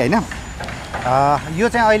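Men's voices talking, with a short pause in the middle, over a low steady background rumble.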